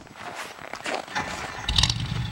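Ford flathead V8 engine comes in suddenly about three-quarters of the way through and idles with an even, low pulsing beat. Before that there are only faint scattered clicks and rustle.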